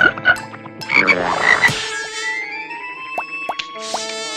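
Frog croaking sound effect, several short loud croaks in the first two seconds, followed by light background music with held notes.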